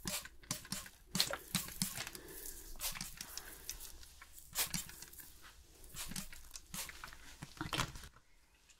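Hand-pumped trigger spray bottle misting water onto hair: a run of short, irregular spritzes, with soft sounds of the hair being handled between them.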